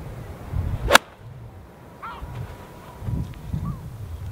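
Golf iron swung through a teed ball: a short rising swish about a second in, ending in one sharp click at impact. The player calls it not the best strike.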